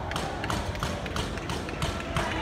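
Rapid, even tapping, about three to four sharp taps a second, over a steady low rumble.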